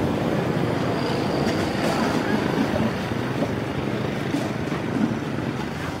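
Steady outdoor street noise with a low rumble of motor vehicle engines.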